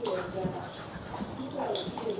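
Two Labrador retrievers play-wrestling, vocalizing in a continuous string of pitched noises that rise and fall.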